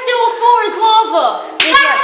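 Children's high-pitched voices, words unclear, with a couple of sharp hand claps near the end.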